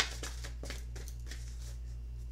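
Oracle cards being handled: a sharp snap at the start, then a few light flicks of card against card, over a steady low electrical hum.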